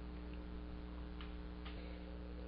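A quiet pause in narration: a faint steady low hum with a couple of faint ticks.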